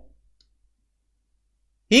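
A pause in a man's speech: near silence with a faint low hum and a small faint click about half a second in, his voice trailing off at the start and starting again just before the end.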